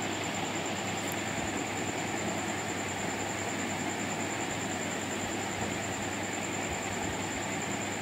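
Steady background noise with a thin, constant high-pitched whine running through it, unchanging and without any distinct events.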